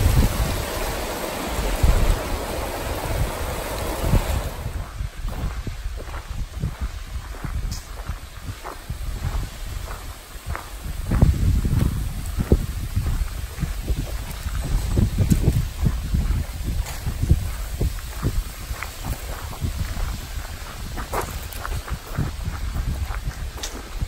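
River rapids rushing for the first few seconds, cutting off abruptly. Then gusts of wind buffet the microphone, with irregular light footfalls on a dirt trail.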